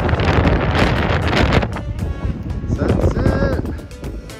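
Wind buffeting the microphone for the first half. About halfway through, background music comes in.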